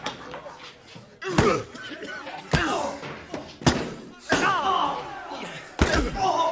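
Four heavy slams about a second apart, with a voice crying out or shouting without clear words between them.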